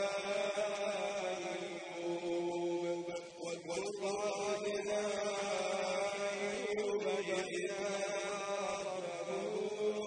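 A man's voice reciting the Quran in melodic, chanted style, holding long drawn-out notes that bend slowly in pitch, with a short breath pause about three seconds in.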